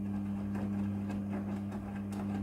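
Midea front-loading washing machine in its wash cycle: the drum motor hums steadily while the drum tumbles wet clothes, with soft irregular swishes and knocks from the load turning over.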